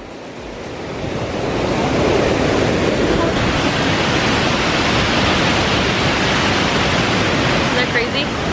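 Loud, steady rushing of a flood-swollen stream churning white water at a waterfall, running high after heavy rain. It grows louder over the first two seconds, then holds even.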